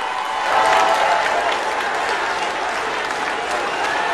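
Large audience applauding, the clapping swelling about half a second in and continuing steadily.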